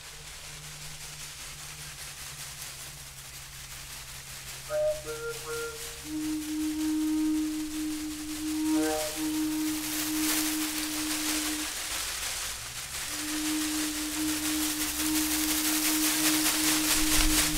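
Long wooden flute played in held notes: a low steady note, then from about six seconds in a higher note held for several seconds, breaking off briefly near twelve seconds and resuming. From about nine seconds in, a hand-held rattle is shaken in quick bursts over the notes.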